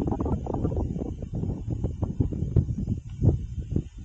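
Wind buffeting the microphone: irregular low rumbling with scattered knocks and no steady tone.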